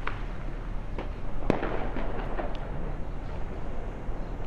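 Dynamite blasts echoing around the hills: about half a dozen sharp bangs, the loudest about a second and a half in, each followed by a rolling echo, over a steady low rumble.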